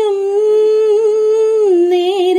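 A woman singing solo into a microphone, holding one long note with a slight waver that steps down in pitch near the end.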